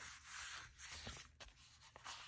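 Faint rustle of sheets of collage paper sliding against each other as they are handled and laid down on a table, with a brief click about one and a half seconds in.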